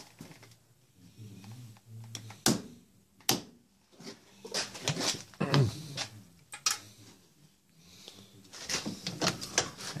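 Workbench handling noises: a few sharp knocks and clicks, the clearest about two and a half and six and a half seconds in, with softer rustling between, as a marking tool, a rubber recoil pad and a wooden gunstock in a vise are handled.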